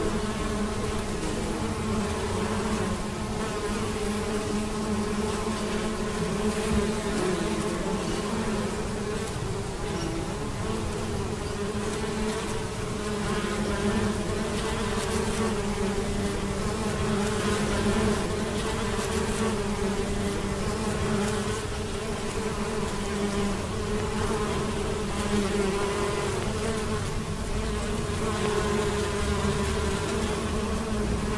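Many honeybees flying and foraging together, buzzing in one continuous, steady hum of overlapping wingbeats.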